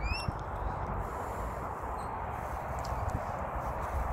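Light footsteps on grass under a steady outdoor rumble and hiss on a handheld phone's microphone, with one short rising bird-like chirp right at the start.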